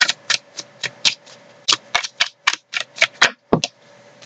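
A tarot deck being shuffled by hand: the cards snap against each other in a quick, uneven series of sharp clicks, about three or four a second.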